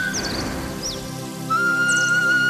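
Instrumental intro: a transverse bamboo flute plays a melody over a steady drone. The flute drops out just after the start and comes back about one and a half seconds in. A couple of short, high whistling chirps fill the gap.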